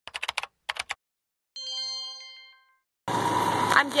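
A news-intro sound effect: a quick run of sharp clicks like typing, a shorter second run, then a bright bell-like chime that rings out for about a second. Near the end steady street noise comes in, and a woman starts to speak.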